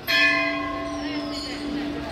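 A temple bell struck once, ringing on with a steady hum that slowly fades, over faint voices.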